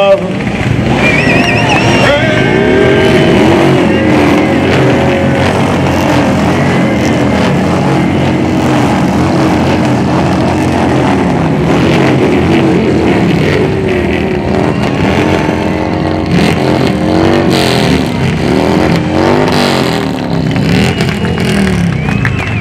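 Several vehicle engines, motorcycles among them, revving repeatedly, their pitch rising and falling, mixed with a crowd cheering and shouting as the anthem ends.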